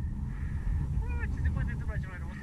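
Faint voices talking over a low, steady rumble.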